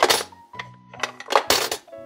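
Two quarters dropping into the coin slot of a plastic toy vending machine: two sharp clacks about a second and a half apart, over steady background music.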